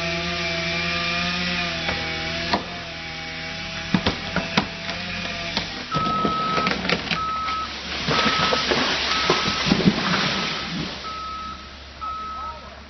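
A chainsaw runs at a steady pitch for about five and a half seconds while the trunk gives a few sharp cracks. The tree then comes down with a long noisy crash of wood and branches, while a machine's backup alarm beeps over and over.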